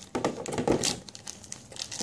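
Cardboard box and plastic packaging being handled and opened: irregular crinkling and rustling with small knocks.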